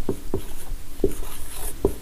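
Felt-tip marker writing on a whiteboard: a few short, sharp strokes and taps of the tip against the board, with faint scratching between them.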